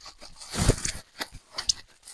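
Bubble wrap rustling and crinkling as it is wrapped by hand around a small item, with a few sharp crackles and a dull thump about a third of the way in.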